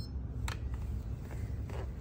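Steady low room hum, with a light click about half a second in and a fainter one near the end.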